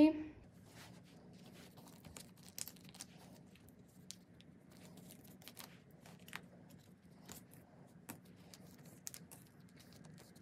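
Photocards being slid into the clear plastic sleeve pockets of a binder page: scattered soft crinkles and light clicks of card and plastic, every second or so.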